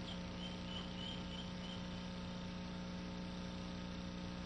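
A steady low hum, with a few faint high chirps in the first two seconds.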